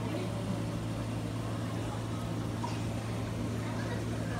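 Steady low hum of running aquarium pumps and filtration equipment, even and unchanging.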